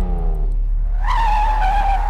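A single high squeal from the car starts about a second in, lasts under a second and falls slightly in pitch. A steady low hum runs underneath.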